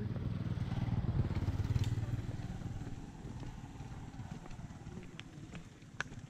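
Small motorcycle engine running, loudest in the first two seconds and then fading away as it moves off.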